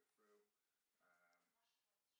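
Near silence, with a very faint voice murmuring in the background.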